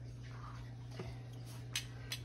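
Quiet kitchen room tone with a steady low electrical hum, and two faint clicks, one about a second in and one near the end.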